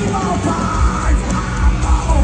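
Live rock band playing loud through an arena PA: pounding drums and bass under the lead singer's vocals.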